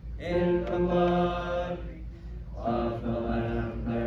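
A group of voices singing a hymn part in slow, held notes, in two phrases with a short breath about two seconds in, over a steady low hum.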